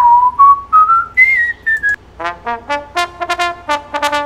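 A recorded whistle: a pure tone swoops down, then steps up through a few held notes for about two seconds. It is followed by a trombone playing a quick run of short staccato notes.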